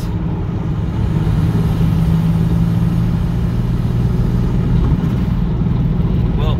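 Toyota MR2 Turbo's turbocharged four-cylinder engine pulling under throttle at about 65 mph, heard from inside the cabin as a steady engine drone with turbo sounds, mixed with road noise.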